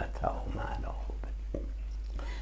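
A man speaking quietly in Persian, his voice low and soft, with a steady low hum beneath.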